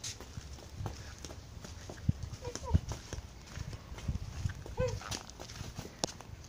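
Footsteps on a dirt path, irregular soft knocks, with two short high-pitched baby vocalizations about halfway through and near the end.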